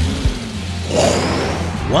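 Animated-cartoon soundtrack: background music over a steady low drone, with a sound-effect swoosh about a second in.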